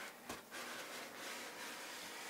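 Cardboard box sleeve sliding up off its inner box: a faint, steady rub of cardboard on cardboard, after a short knock about a third of a second in.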